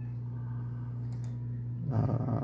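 A couple of faint computer mouse clicks over a steady low hum.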